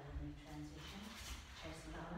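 Several people jumping back from a forward fold into plank on yoga mats over a wooden floor, giving a low rumble of thuds, with breathing and a woman's counting voice over it.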